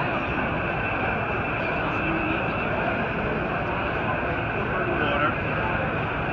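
Steady hubbub of many people talking at once in a crowded exhibition hall, with no single voice standing out.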